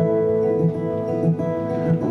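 Acoustic guitar playing in a short instrumental gap between sung lines of a folk song, over held notes and a steady beat.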